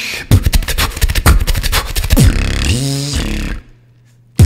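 Beatboxing: a fast run of vocal kick and snare clicks, then about two seconds in a low, pitched vocal bass that bends up and down before cutting off suddenly near the end.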